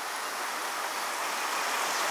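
A small, fast river rushing steadily over rocks.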